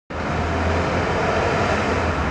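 Street traffic: cars driving slowly along a village road, a steady engine hum with tyre noise.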